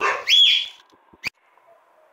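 Cold milk hitting hot melted sugar in an aluminium pot gives a sudden, loud hiss that fades within about a second: the melted sugar reacting to the liquid. A single sharp click follows about a second later.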